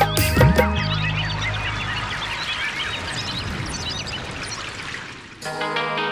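Song music with a drum beat cuts off about a second in. It gives way to many birds chirping over a steady rush of flowing water. About five seconds in, plucked-string music comes in.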